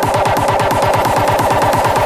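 Hardcore electronic dance track: a fast, unbroken run of distorted kick drums under a bright synth layer.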